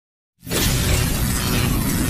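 Intro sound effect: a loud, dense crashing sound with a deep rumble beneath, starting suddenly about half a second in after silence.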